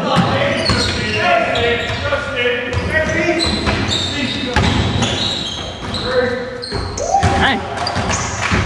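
A basketball bouncing on a gym's hardwood court among indistinct shouts and chatter from players, in the reverberant space of an indoor gym.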